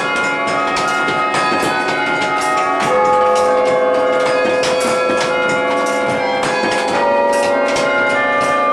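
23-bell carillon played from its baton keyboard, heard from inside the tower: a tune of struck bells whose long ringing tones overlap. About three seconds in a deeper bell rings out strongly and holds under the higher notes.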